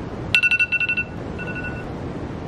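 iPhone wake-up alarm going off: a quick run of rapid high beeps, then after a short pause a briefer burst of the same tone.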